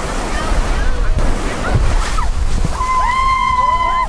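Surf washing up the beach, with wind on the microphone. Near the end, one high voice holds a long, steady shout.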